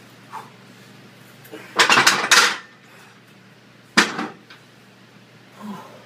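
Heavy 100 lb hex dumbbells clanking as they are set down: a quick cluster of loud clanks about two seconds in, then a single sharp clank at about four seconds.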